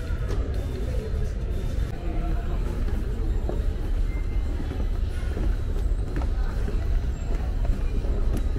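Background music over a low, steady rumble.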